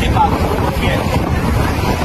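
Wind buffeting the microphone over the steady noise of a motorboat under way, its engine and the water rushing past the hull.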